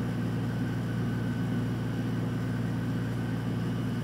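A steady low hum that does not change, with no other sound in it.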